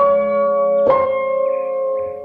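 Instrumental piano passage of a pop song: chords struck about once a second and left ringing, with no vocals or drums.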